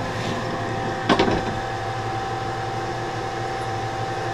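Hardinge DSMA automatic turret lathe running with a steady hum at its threading step, a J&L die head threading a 1018 steel bolt. There is a brief knock about a second in.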